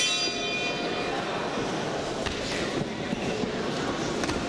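Ring bell struck once and ringing out, fading over about a second, signalling the start of the round.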